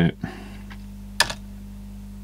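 One sharp key click on a 1974 Sanyo CY2157 desktop calculator's keyboard a little over a second in, over a steady low hum.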